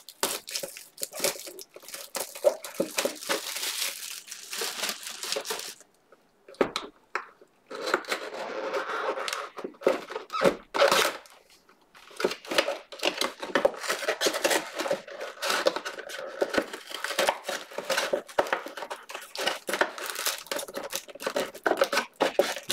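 Cellophane shrink-wrap being torn and crumpled off a trading-card box, with irregular crinkling and two brief pauses near the middle.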